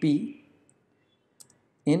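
A couple of light computer keyboard key clicks about a second and a half in, keys being typed while writing code, after a man's voice says one short word at the start.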